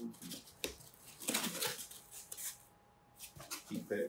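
Styrofoam shipping-cooler lid squeaking and scraping as it is worked loose and lifted out of a cardboard box, with rustling of the packing; loudest about a second and a half in.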